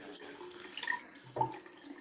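Faint running water from a bathroom sink tap, as when a straight razor is rinsed between shaving passes.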